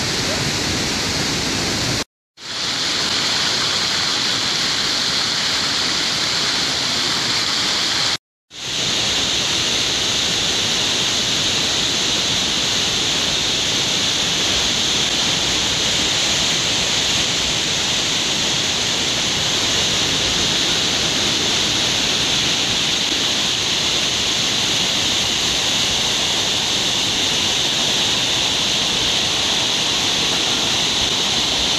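Creek water rushing down small cascades and chutes over smooth rock slabs, a steady rush. The sound drops out to silence twice, briefly, about two and eight seconds in.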